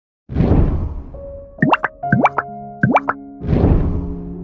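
Intro sound effects over music: a burst of noise, then three quick upward-sliding bloops over a few held notes, then a second swell of noise that leads into soft sustained music.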